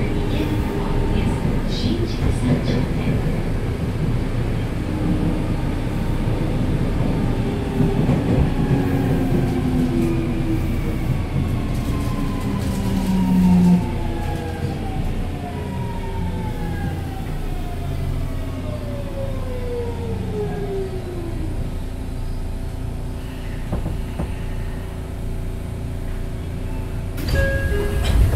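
Seibu 6000 series train's Hitachi GTO VVVF inverter whining in tones that fall steadily in pitch as the train slows under braking, over the steady rumble of the wheels on the rails, heard from inside the car. It gets louder near the end.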